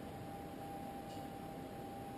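Quiet room tone with a faint steady hum, and a single faint tick about a second in.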